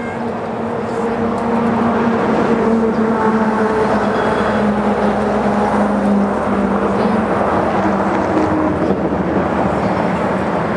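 An engine running with a steady low hum, growing louder over the first couple of seconds and then holding.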